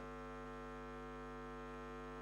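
Faint, steady electrical mains hum on the sound system: a low buzz made of a stack of evenly spaced steady tones, unchanging throughout.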